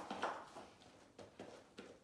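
A few faint, scattered taps and knocks from a large Newfoundland dog's feet moving on the floor.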